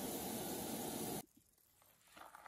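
Vegetables sizzling in a cast iron skillet on a propane camp stove as the thawed liquid in the pan cooks off, a steady hiss. It cuts off abruptly a little over a second in, leaving near silence.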